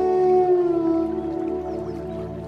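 Bansuri (bamboo flute) holding one long note that dips slightly in pitch and fades away, over a steady drone.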